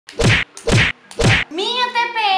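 Three loud hits about half a second apart, each a short blunt burst, followed by a voice starting near the end.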